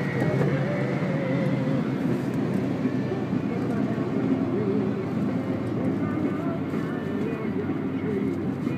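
Steady road and engine noise inside a moving car, with a person's voice over it.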